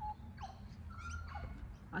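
Soft bird calls: a few short whistled notes and quick downward sweeps, one held briefly at a steady pitch about halfway through.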